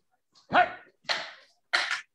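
A man's sharp shouts, three short loud bursts about half a second apart, the first a barked "Hey!": a voice feint meant to startle the opponent and spike his adrenaline.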